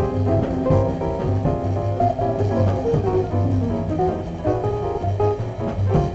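Small jazz combo playing an instrumental passage: a plucked upright bass keeps a steady beat under piano and archtop guitar lines, with drums behind.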